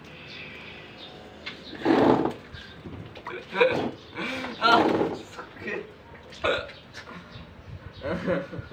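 Boys' voices in short, separate bursts of talk or vocal sounds, the loudest about two seconds in.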